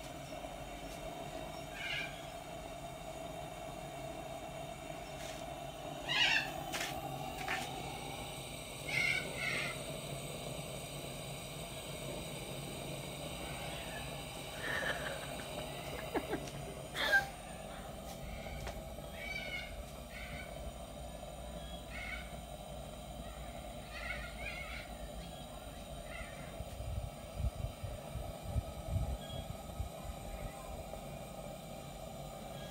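Coleman Northstar dual-fuel pressure lantern burning with a steady hiss. Short high animal calls come over it about eight times, and a couple of sharp clicks come about halfway through.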